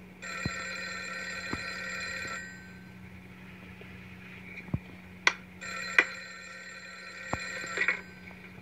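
Bedside corded telephone ringing twice, each ring about two seconds long with a pause of about three seconds between them.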